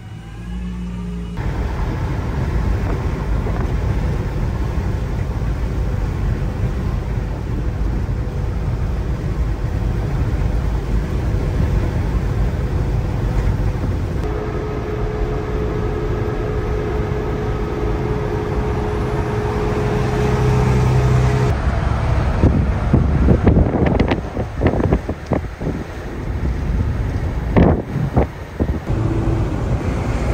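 Box truck driving at highway speed, heard from inside the cab: steady engine and road noise. In the last several seconds the sound turns uneven, with a string of short, louder surges.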